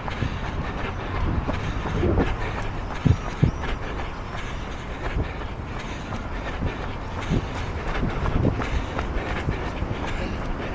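Steady low rumble of wind on the microphone of a handheld action camera carried on a run, with scattered soft thumps from footfalls and handling, the clearest about three seconds in.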